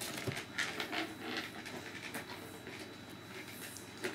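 Faint handling sounds of a cardboard toy box being worked open: a few soft scrapes and light taps in the first second or so, then quiet room tone.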